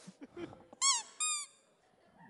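Two short, high-pitched squealing laughs about a second in, each falling in pitch, with faint scraps of voices just before.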